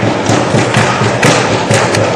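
Audience clapping in a steady rhythm, about four beats a second, the low thump of each beat under a noisy patter of hands.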